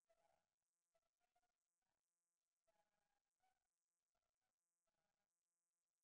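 Near silence: the shared video's soundtrack is not coming through to the webinar recording.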